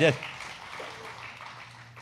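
Light audience applause fading away after the end of a man's spoken word.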